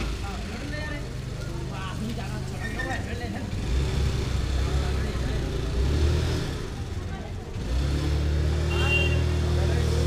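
Busy market street ambience: indistinct voices of people talking over the steady hum of motor vehicle engines, which gets louder about eight seconds in as a vehicle runs close by.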